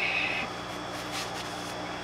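Room tone: a steady low hum, with a short high hiss at the very start and a few faint ticks about a second in, from hands moving over the workbench.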